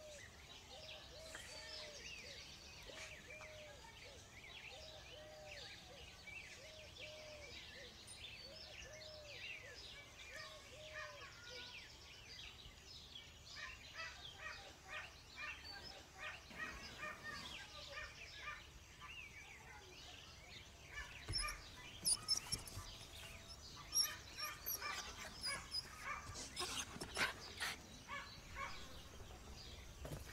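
Outdoor ambience of birds singing, with many short chirps. A low call repeats about every 0.7 seconds through the first eleven seconds or so. In the last third a few louder, sharp sounds stand out.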